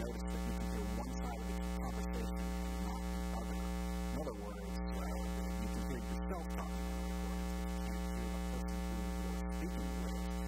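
Steady electrical mains hum, a low buzz with many overtones, holding at an even level throughout.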